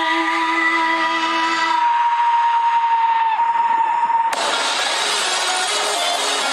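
Film sound effects: a long held high-pitched tone, then a sudden loud crash with shattering about four seconds in.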